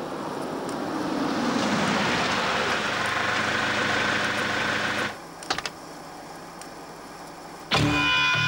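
Mercedes-Benz W123 sedan rolling in and pulling up, its engine and tyre noise growing louder and then cutting off suddenly about five seconds in. A car door latch clicks open just after.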